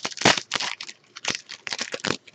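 Foil wrapper of a trading-card pack being torn open and crinkled by hand: quick clusters of sharp crackles.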